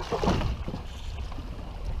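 Low, steady rumble of wind buffeting the camera microphone aboard a small boat, with faint water noise beneath it.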